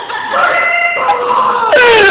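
A person's high-pitched, drawn-out squealing cries in long held notes, the pitch sliding down near the end.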